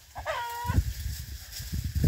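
A chicken gives one short, pitched call about half a second in, followed by low thuds of footsteps on dry ground.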